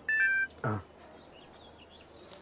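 Smartphone notification chime from a delivery app: a quick run of several bright electronic tones stepping down in pitch, announcing a new order to pick up. A brief falling vocal sound follows just after.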